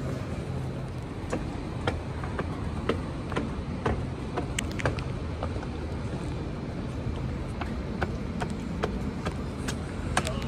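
Footsteps climbing outdoor stairs, sharp taps about two a second, over a steady low hum of city traffic.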